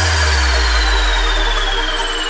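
Electronic dance music with no drum beat: a long held deep bass note under a high synth tone that slides slowly downward.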